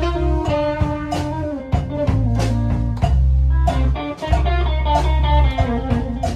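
Live blues band playing an instrumental passage: electric guitar over sustained bass notes and a steady drum-kit beat.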